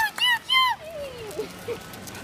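About four short, high-pitched excited cries in quick succession in the first second, then a single falling whine.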